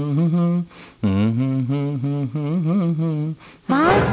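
A voice humming a wavering, winding tune in phrases of one to two seconds, with short breaks between them.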